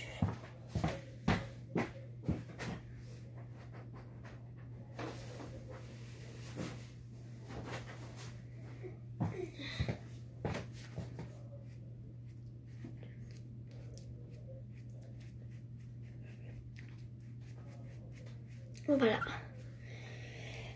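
Light clicks and knocks of handling, in a quick run over the first three seconds and then sparse and faint, over a steady low hum; a short vocal sound breaks in about nine seconds in.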